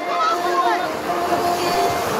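Spectators shouting as a pack of BMX riders races through a paved berm turn, one voice holding a long steady call, over a rushing haze of tyre and crowd noise.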